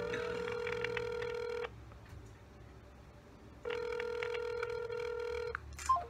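Ringback tone of an outgoing phone call, heard through a smartphone's loudspeaker: a steady ringing tone that stops, leaves a gap of about two seconds, then sounds again for about two seconds while the call goes unanswered.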